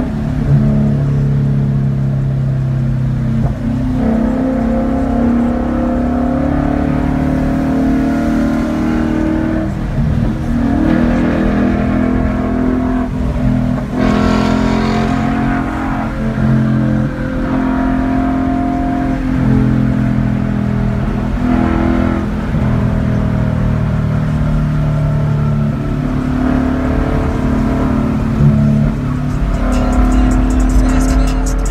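2016 Ford Mustang GT's 5.0-litre Coyote V8 with a six-speed manual, heard from inside the cabin while driving at highway speed. The engine note rises and falls several times with the throttle, over steady road rumble.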